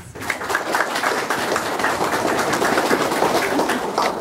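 Audience applause: many people clapping steadily, stopping near the end.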